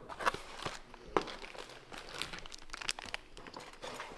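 Clear plastic packaging crinkling and rustling, with light clicks and knocks, as a car part is lifted out of a cardboard box; one sharper click comes a little over a second in.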